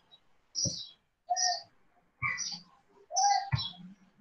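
Small birds chirping in about five short, separate calls.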